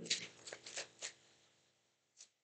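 Tarot cards being handled: a quick run of about six short card rustles and snaps over the first second.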